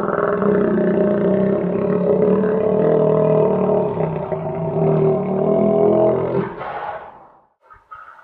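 Recording of an alligator roaring: one long, low, continuous roar that fades out about seven seconds in.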